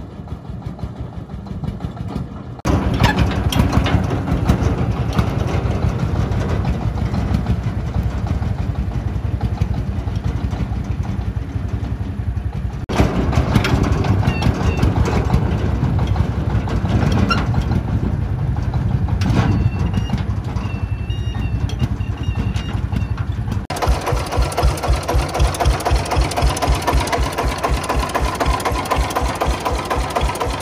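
Công nông farm truck's single-cylinder diesel engine running under load as the truck drives across a field. About three-quarters of the way through it turns into a close, fast, even chug.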